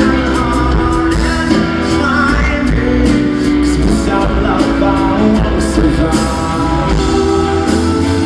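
Alternative rock band playing live: a male lead vocal sung over electric guitars, bass and a drum kit with steady cymbals, recorded from the audience in an arena.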